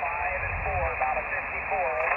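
Single-sideband voice on the 20-metre band coming from an Elecraft KX2 transceiver's speaker: a weak, distant station speaking faintly in steady band hiss, with the thin, narrow sound of an SSB receive filter.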